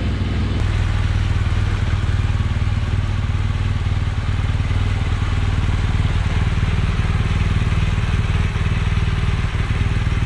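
BMW R1200GS Adventure's flat-twin boxer engine running at a steady, even speed with no revving. A constant hiss lies over it.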